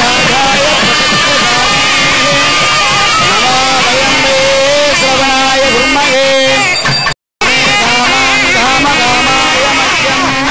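Nadaswaram-style temple wind music: a reedy melody of long, wavering, ornamented notes over a steady held drone. The sound drops out completely for a moment about seven seconds in.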